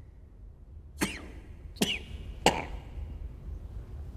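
A man coughing three times in quick succession, each cough short and sharp.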